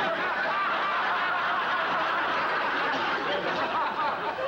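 Studio audience laughing: a sustained, even wave of laughter from many people that holds steady for the whole few seconds.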